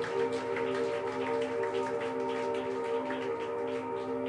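Live ambient electronic music: a sustained drone of several held notes with a light, irregular patter of soft clicks over it.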